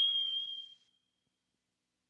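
A single high ding, struck once and ringing away over about a second and a half, closing an intro sting.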